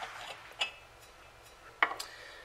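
A brass valve fitting being unscrewed from the top of a steel propane cylinder with a few light metallic clicks, then set down on a wooden tabletop with a sharp knock near the end.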